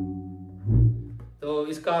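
A tabla ringing out after the last strokes of a pattern, the bayan's deep bass note fading. A soft low stroke sounds on the bass drum under a second in, then a man starts speaking.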